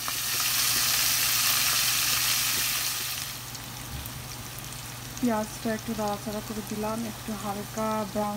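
A pan of sliced onions and green chillies in hot oil sizzling loudly for about three seconds, then dying down to a quieter sizzle.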